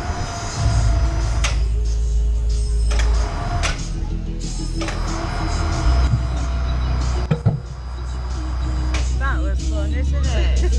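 A low, steady rumble from a slingshot amusement ride, with scattered clicks and knocks from the seats and harness. Music and voices sound in the background.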